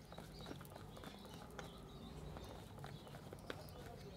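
A tarot deck being shuffled by hand: faint, irregular soft clicks and flicks of the cards against each other.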